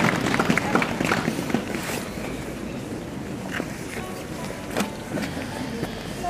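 Outdoor town-square ambience of a waiting crowd: low murmur and a low traffic hum, with a dense patter that dies away over the first two seconds and a few scattered clicks after it.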